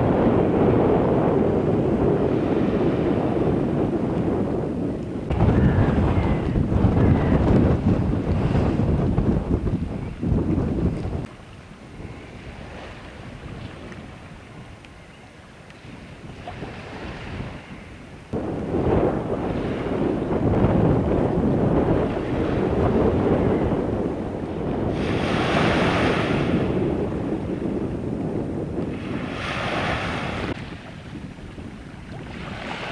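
Wind buffeting the microphone in loud gusts over rough floodwater, easing to a quieter spell in the middle. Near the end, waves break and wash up onto a paved bank in two splashing rushes.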